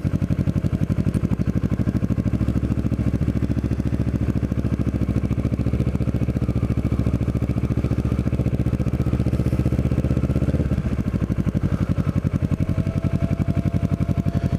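Kawasaki Ninja 650R's parallel-twin engine running at low road speed, heard from the rider's seat, with a steady, even exhaust pulse. Its note changes about ten and a half seconds in.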